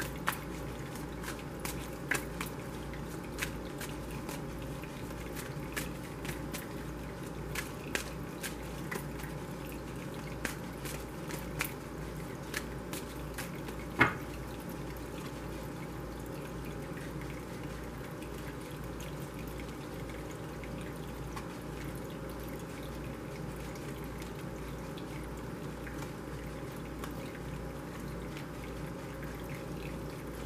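A deck of tarot cards being shuffled by hand: light, irregular card clicks and slaps through about the first half, ending in one sharper tap. After that only a steady faint background hum remains.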